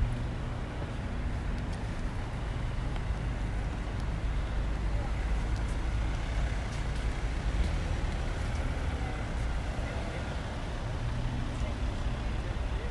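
City road traffic close by: cars passing and moving slowly in a queue, giving a steady low rumble of engines and tyres, with indistinct voices mixed in.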